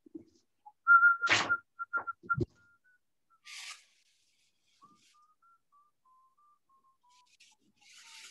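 A person whistling softly: a held note, then a slow string of short notes stepping gradually lower. Several loud knocks and handling thumps come in the first couple of seconds, and there are brief rustles.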